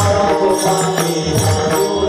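Devotional kirtan music: chanted group singing over a drum and small hand cymbals keeping a steady beat.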